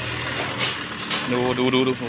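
A steady low hum like an idling engine, with two short hissing bursts about half a second apart.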